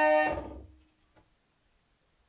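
An antique Dominion reed organ's final chord, held steady, then released about a third of a second in and dying away within about half a second, leaving near silence with one faint click.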